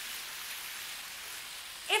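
Steady rushing and splashing of sewage water flowing along a brick sewer, with water pouring in from a side inlet.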